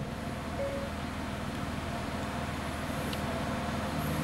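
Renault Clio 0.9 TCe three-cylinder turbo petrol engine idling, heard inside the cabin as a steady low hum. A brief faint tone sounds about half a second in.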